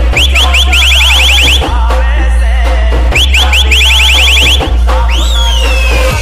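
Loud DJ dance music: a heavy, continuous bass that drops out briefly about every one and a half seconds, under a fast repeated high chirping riff. About five seconds in, a swooping siren-like tone comes in.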